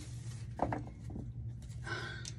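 Tarot cards being laid down on a wooden table: a few soft taps and slides about half a second to a second in, over a low steady hum.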